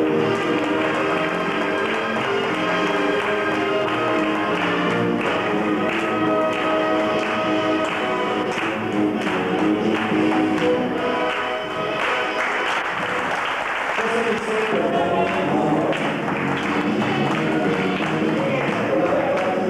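Recorded dance music with a steady beat for a Latin ballroom couple's routine. About two-thirds of the way through the music gives way to a few seconds of audience applause, and then a new dance track starts.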